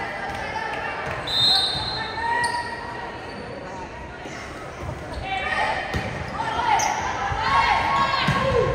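Indoor volleyball rally on a hardwood gym floor: sneakers squeak in short chirps, growing busier from about halfway through, with a few sharp strikes of hands on the ball as it is served and played. Voices chatter throughout in the echoing hall.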